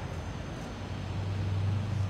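Low rumble of a motor vehicle in road traffic, growing louder about a second in, over a steady outdoor hiss.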